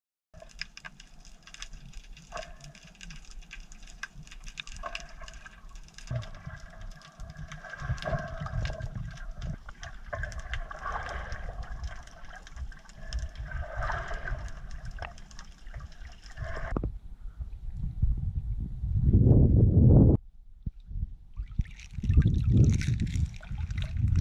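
Sea water heard through a camera held underwater: muffled gurgling with a fine crackling of clicks. Over the last several seconds it turns to louder, deeper sloshing and splashing in shallow water.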